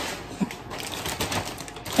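Plastic packaging crinkling and rustling as it is handled, a quick, uneven run of small crackles.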